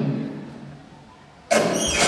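Stunt-show soundtrack over the PA: a drum-pulsed music cue ends and fades away, then about one and a half seconds in a loud sound effect with a falling squeal cuts in suddenly.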